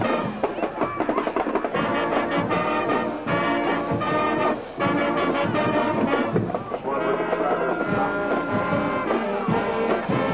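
High school marching band playing a stand tune on trumpets, trombones, saxophones and sousaphone. Short, punchy chords in the first half give way to longer held notes from about seven seconds in.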